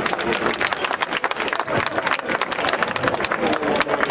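Audience applauding: many hands clapping densely and irregularly at a steady level.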